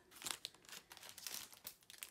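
Clear plastic cello packaging crinkling faintly and irregularly as it is handled and set down, holding acetate and foiled die-cuts.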